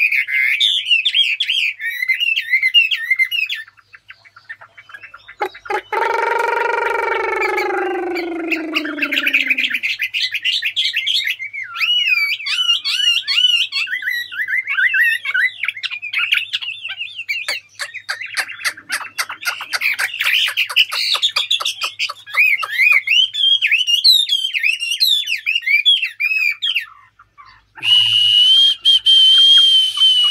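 A caged songbird singing a long, varied song of quick rising and falling whistled notes, with hardly a pause. About five seconds in, a separate lower tone with overtones slides slowly downward for about four seconds. Near the end a hiss with a steady high whistle joins in.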